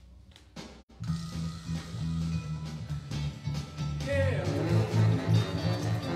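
Recorded instrumental song played back through a PA speaker, starting about a second in after a click. It has low sustained bass notes and a beat, with a wavering, falling sound about four seconds in.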